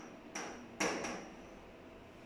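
Two sharp taps about half a second apart, each with a short high ring.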